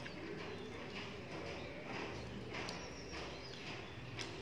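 Close-up eating sounds: chewing and fingers gathering rice on a steel plate, with a low cooing sound in the background twice.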